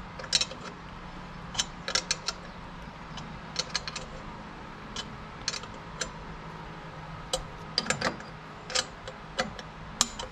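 Irregular metallic clicks and clinks of a small hand wrench working a nut and bolt on a throttle-lever bracket, the busiest cluster about eight seconds in. The bolt is a pivot that is only snugged, not tightened hard, so the lever can still move.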